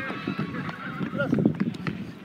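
Players' voices calling out across a small-sided football game on artificial turf, with running footsteps and a few sharp knocks.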